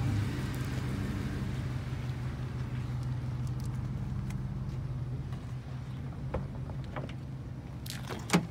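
A vehicle engine running with a steady low hum, with a few faint clicks near the end.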